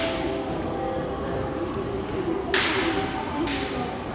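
Busy train-station concourse ambience: a murmur of voices with a steady background hum, broken by short hissing whooshes, the loudest a little past halfway.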